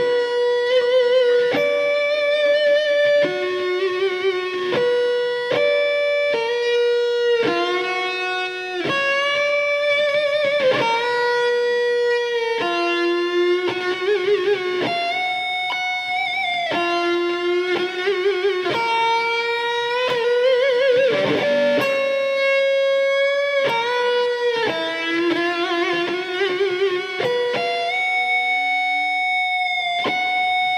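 Electric guitar playing a slow lead line of single sustained notes, a few pitches around the B above middle C, repeated in varied ways. Notes slide up into pitch as string bends, and many are held with a wavy vibrato.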